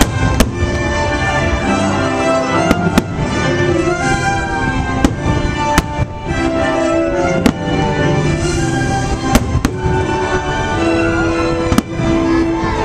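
Fireworks shells bursting in sharp bangs, about nine in all at uneven intervals, over orchestral show music.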